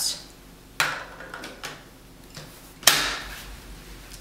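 Scope being attached to an Absolute Zero quick-detach claw mount on an AR-15: two sharp metal clicks, a lighter one about a second in and a louder snap near three seconds as the claws seat and lock in the spring-loaded base.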